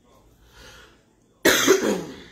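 A woman coughs once loudly about one and a half seconds in, a short sudden burst that fades out over about half a second.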